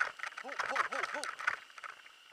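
Mountain bike clattering over a rocky dirt trail, with quick rattling clicks and knocks from the bike. About half a second in, four short rising-and-falling tones follow each other in quick succession.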